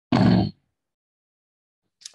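A single short, throaty vocal sound from a man, about half a second long, shortly after the start.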